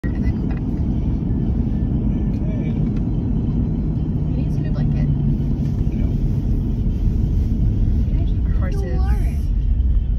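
Steady low road-and-engine rumble inside a moving car's cabin, with a voice faintly over it.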